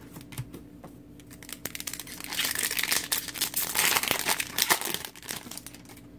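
Crinkling of a foil trading-card pack wrapper, loudest from about two to five seconds in, after a few light clicks of cards being handled.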